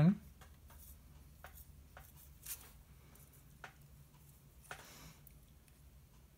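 Faint, scattered light clicks and scrapes of handling as an epoxy-coated brass pen tube is slid into a drilled pen blank and pushed through it, about five small ticks over a faint low hum.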